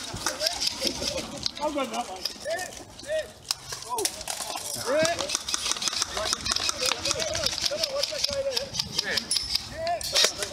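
Voices of players calling and shouting at a distance, too far off to make out words. Frequent sharp clicks and rattles run through it.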